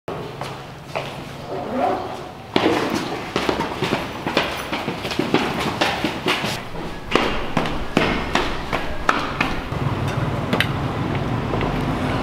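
Footsteps of several people walking down an indoor staircase, quick steps about two a second, starting with a sharp knock about two and a half seconds in.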